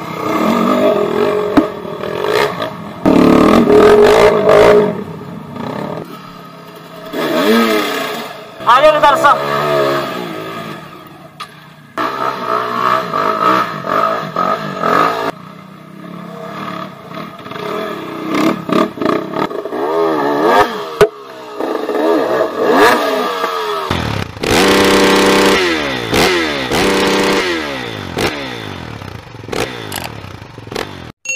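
Dirt bike engines revving up and down in repeated bursts as they claw up a steep dirt single track, with strong rising and falling rev sweeps about a third of the way in and again near the end.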